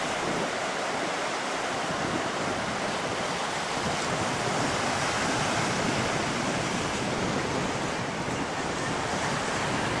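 Steady ocean surf, waves breaking on the reef and washing up the rocky shore, with wind buffeting the microphone.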